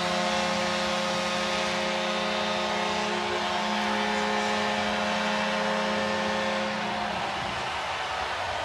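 Arena goal horn blaring one long, steady note over a cheering, clapping crowd, the signal of a home-team goal; the horn cuts off about seven seconds in.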